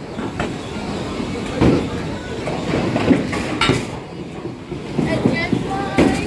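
Bowling ball rolling off a metal bowling ramp and down a wooden lane, a continuous low rumble, with a few sharp knocks.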